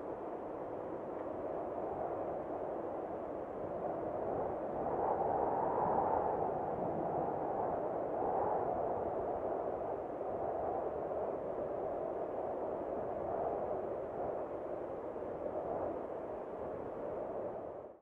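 A steady, airy rushing noise without distinct tones, swelling a little midway and cutting off abruptly at the very end.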